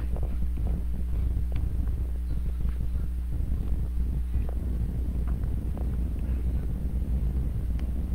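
Steady low hum in the recording, with a few faint clicks scattered through.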